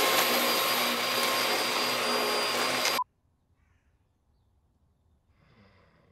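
Upright vacuum cleaner running loudly, a steady rush with a thin whine in it, cut off suddenly about three seconds in.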